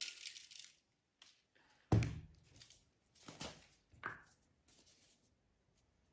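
Salt sprinkled by hand into a plastic bowl of raw butternut squash sticks, a brief grainy patter, then a sharp knock about two seconds in as a small container is set down on a wooden chopping board, followed by two softer knocks.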